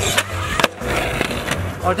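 Skateboard wheels rolling on rough concrete, with two sharp clacks of the board striking the ground in the first second.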